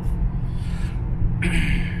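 Dodge Challenger SRT's V8 cruising at steady highway speed, heard from inside the cabin as a steady low drone, with a brief hiss near the end.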